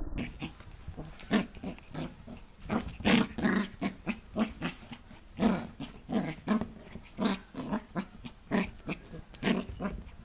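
Pembroke Welsh Corgi puppy vocalizing in short bursts, about two a second, while play-fighting a hand.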